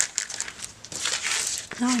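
Clear cellophane bag crinkling as it is handled, densest about a second in.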